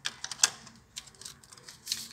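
Paper and cardboard phone packaging handled and pulled from its box: a quick, irregular run of crisp clicks and rustles, the sharpest about half a second in.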